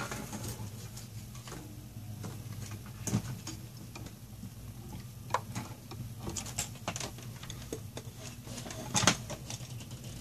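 Scattered light clicks, taps and rustling of a phone being handled and plugged into its charger, with a slightly louder knock about three seconds in and another near the end, over a steady low hum.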